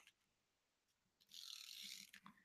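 Glue tape roller drawn across paper, heard about a second and a half in as a faint, brief scratchy whir of its tape-winding mechanism after near silence.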